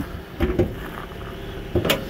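A thump about half a second in, then a sharp metallic click near the end as the Toyota Camry's hood safety latch is released and the hood lifted. A low steady hum of the engine idling runs underneath.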